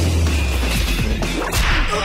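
A sharp whip-like swish, a fight-scene sound effect, about a second and a half in, over dramatic film music with a deep bass note at the start.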